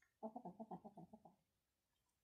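An animal's call: a rapid run of short pitched pulses, about nine a second, lasting just over a second.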